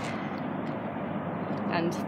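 Steady, unbroken noise of lorry traffic on a road, with one spoken word near the end.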